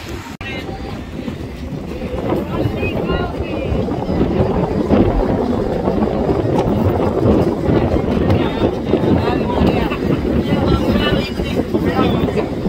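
Wind buffeting the microphone: a loud, rough rumble that builds over the first few seconds and then holds, with faint voices of people in the background.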